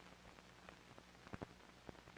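Near silence: a faint low hum with a few soft clicks.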